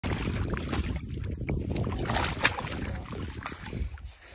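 Shallow water splashing and sloshing around a large stingray flapping at the water's edge, with wind rumbling on the microphone and a few sharp clicks. The sound fades near the end.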